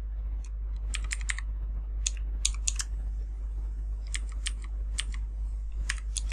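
Computer keyboard keys being typed in a few short runs of keystrokes as a password is entered, over a steady low hum.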